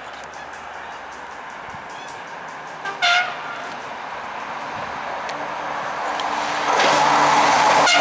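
Horn of an SNCB AM 80 'Break' electric multiple unit sounding one short blast about three seconds in. The rush and rumble of the train then swells as it approaches and passes close by at speed near the end.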